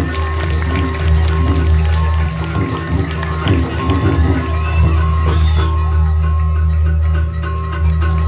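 Balinese gamelan accompanying a Jauk dance: bronze metallophones and gongs ringing in a fast, repeating pattern over a deep sustained hum. A bright high clatter drops out about six seconds in.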